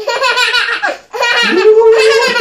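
A young child laughing in two bursts with a short break about a second in, the second a long, high laugh.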